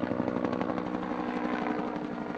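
Helicopter flying overhead, rotor and engine running steadily with a steady hum and a fast, even beat of the blades.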